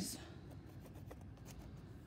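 Faint, light scratching and ticks of a marker on corrugated cardboard as the corners of a box are marked.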